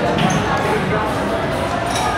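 Busy restaurant dining room: steady background chatter of many overlapping voices, with a couple of light knocks.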